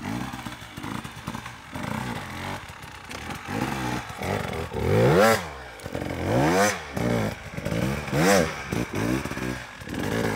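Enduro motorcycle engine revved in short throttle bursts as it climbs a steep, loose dirt slope, its pitch rising and falling again and again. The three sharpest revs come past the middle.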